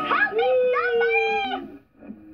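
A child's voice doing a ghostly wail: a quick rising whoop, then one long "oooh" that slowly falls in pitch and stops shortly before the end.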